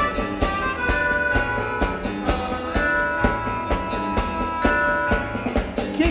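Live beat band playing: a harmonica holds long notes over a drum kit keeping a steady beat of about two hits a second.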